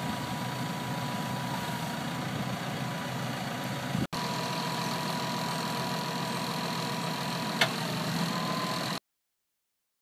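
Tractor engine running steadily at idle, with a thin steady high whine over it. There is a brief break about four seconds in and a single click near the end, and the sound cuts off about nine seconds in.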